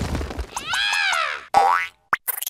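Cartoon sound effects: a noisy rumble dies away, then a pitched boing arcs up and falls back over about a second, followed by a short rising whistle-like glide near the end.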